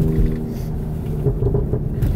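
Irregular low rumble of a handheld camera being moved around inside a moving car's cabin, over the car's road noise; the steady engine drone fades under it.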